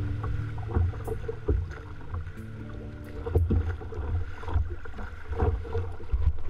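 Sea water slapping and splashing irregularly against the plastic hull of a Wilderness Systems kayak, under a low rumble of wind on the bow-mounted microphone. Background music fades out in the first moment.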